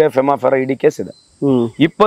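A man speaking, with a steady high-pitched insect drone in the background, in two even tones that run on unbroken.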